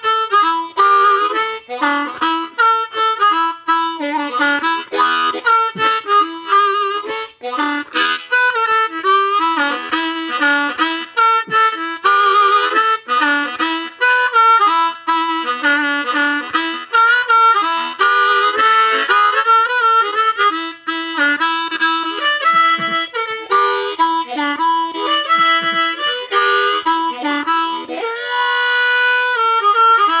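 Diatonic harmonica played solo in a blues style: a continuous run of short notes, some bent so they slide in pitch, ending on a longer held chord near the end.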